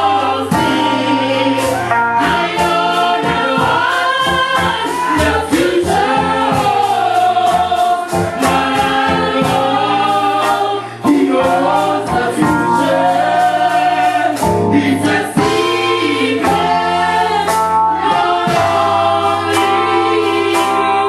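Junior gospel choir of girls and women, with a man among them, singing together into handheld microphones, over accompaniment with a steady beat.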